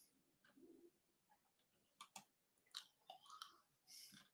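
Near silence: room tone with a few faint short clicks and small noises.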